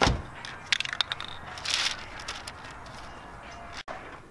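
Aerosol spray-paint can spraying onto a fabric convertible soft top: a short hiss a little under two seconds in, after a low thump at the start and a few sharp clicks about a second in.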